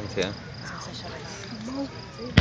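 Crickets chirping steadily in the lull between fireworks bursts, as the low rumble of the last burst dies away at the start.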